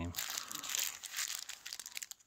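A small clear plastic parts bag of steel pins crinkling as it is handled and turned in the hand, an irregular rustle with fine crackles throughout.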